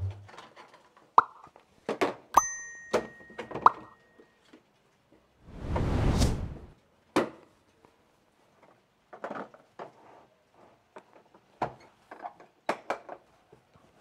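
Saw, battery and blades being packed into a hard plastic tool case: scattered plastic clicks and knocks. About two and a half seconds in, a metal saw blade clinks and rings briefly. Around six seconds in there is a second-long scraping noise.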